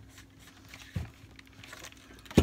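Faint rustling of a paper sheet as a household iron is pressed and slid over it and then lifted away, with one light knock about a second in.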